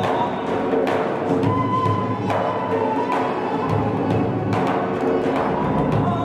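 Armenian folk ensemble playing: small reed wind instruments hold a wavering melody over strokes of a large double-headed drum and a frame drum.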